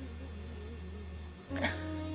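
Steady low electrical hum, a mains buzz on the recording, with a faint wavering tone above it. The hum changes abruptly shortly before the end.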